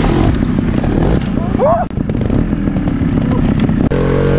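Trial motorcycle engine running with irregular blips of throttle as the bike is ridden over rocks. The sound breaks off suddenly just before the end.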